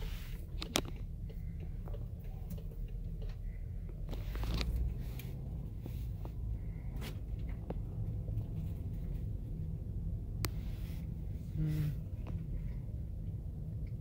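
Low, steady rumble of a car's engine and tyres heard from inside the cabin as it drives slowly, with a few scattered clicks and knocks.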